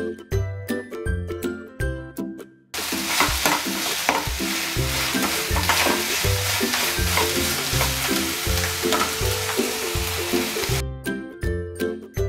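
Vegetables sizzling in a steel kadhai while a metal spatula stirs and scrapes through them, starting about three seconds in and stopping about a second before the end. Background music with a steady bass beat plays throughout.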